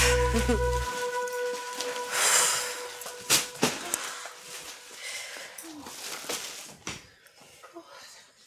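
Background music stops about a second in; then shopping bags rustle and are set down, with footsteps, a few light knocks and tired, heavy exhalations as a woman drops back onto a sofa.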